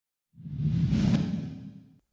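A whoosh transition sound effect that swells in about half a second in and fades away toward the end.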